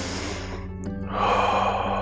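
A man taking a slow deep breath: a breath drawn in, then a longer breath let out through the mouth, over soft background music.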